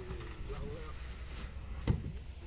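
One sharp, heavy knock near the end, the loudest sound here, as a large loudspeaker cabinet is set against a stack of cabinets, over a steady low rumble.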